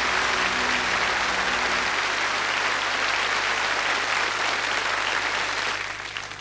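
Large theatre audience applauding steadily at the end of a song, with the band's last low chord sounding underneath for about the first two seconds.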